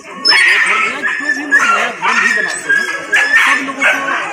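A dog barking repeatedly, loud and close to the microphone, over a man's voice.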